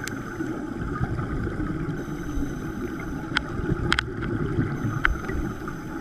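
Underwater ambience heard through a camera housing: a steady low rumble, with five sharp clicks, two of them close together about four seconds in.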